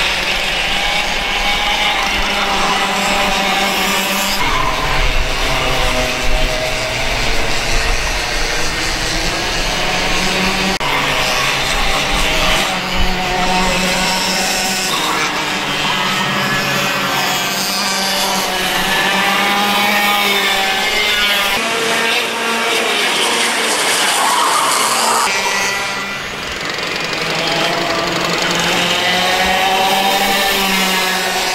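Several small two-stroke kart engines racing, their pitch rising and falling as the karts speed up out of corners and back off into them, with more than one engine often heard at once.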